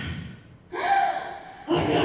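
A person gasping sharply, followed by two more wordless voice sounds about a second apart, in a large hall.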